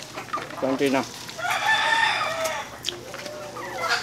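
A rooster crowing once: a single drawn-out call of about two seconds that starts over a second in and trails off lower near the end.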